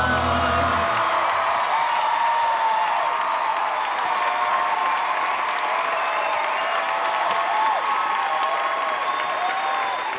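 An a cappella group's final held chord, with its deep bass voice, ends about a second in. A studio audience then applauds and cheers, with many short rising-and-falling shouts over the clapping.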